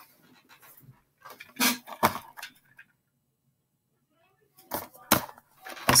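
A few brief knocks, clicks and rustles of objects being handled and set down on a desk, with a silent stretch midway and two sharper clicks near the end.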